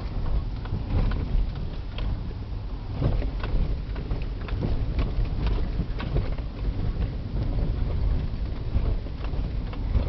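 Inside a car jolting along a potholed, muddy dirt road: a steady low rumble of engine and tyres with frequent knocks and rattles as the body and suspension take the bumps.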